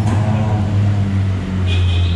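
Honda Click scooter's single-cylinder four-stroke engine idling steadily, with a handlebar switch clicking at the start. A higher steady tone joins near the end.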